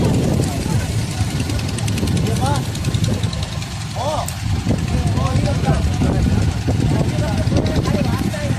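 A vehicle engine running steadily, with men's voices talking over it.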